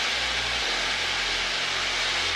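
Steady drone of an Extra aerobatic plane's piston engine and propeller, mixed with rushing airflow noise, as heard inside the cockpit in flight.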